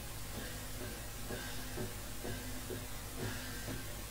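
Kachin traditional dance music, faint: a drum beaten steadily about twice a second over a steady low hum.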